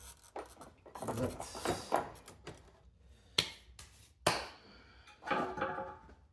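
Aluminium cylinder head of a Sym Jet 14 four-stroke scooter engine being worked loose and slid off its studs by hand, with scattered metal-on-metal clicks and knocks. There are two sharp knocks in the middle and a short metallic ring near the end.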